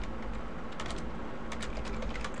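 Keystrokes on a computer keyboard: a quick, irregular run of key clicks as a word is typed.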